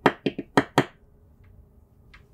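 A stylus tapping on a tablet's glass screen while an answer is written: a quick run of sharp taps, about five a second, that stops about a second in.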